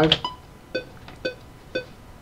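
Cubase metronome clicking in 4/4 at 120 BPM during playback: short electronic beeps every half second, with the first beat of each bar at a different pitch from the other three.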